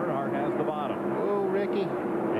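A field of NASCAR Winston Cup stock cars' V8 engines at racing speed, a steady drone under a commentator's voice.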